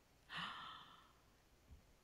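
Near silence, apart from one short, soft breathy exhale, like a sigh, from a woman about half a second in.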